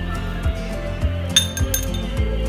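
Background music with a steady beat. Near the end, a steel spoon clinks a few times against a small glass bowl as rava kesari is spooned into it.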